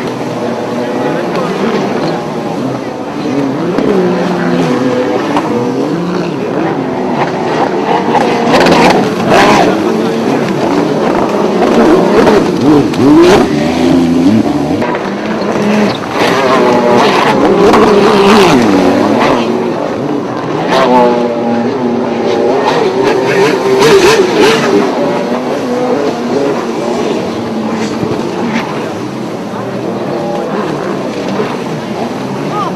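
Several racing runabout jet skis' engines, overlapping, their pitch rising and falling as the riders rev on and off the throttle, louder in repeated surges through the middle.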